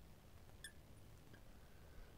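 Near silence: room tone, with one faint, brief squeak of a marker writing on a glass lightboard about two-thirds of a second in.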